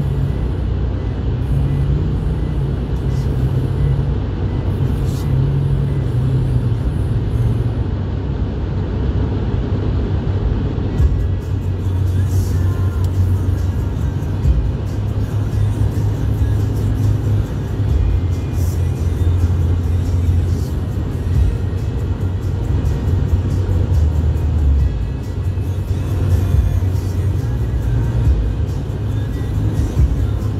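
Steady road and engine noise inside a moving car's cabin, with music playing over it; low notes in the music change every second or so.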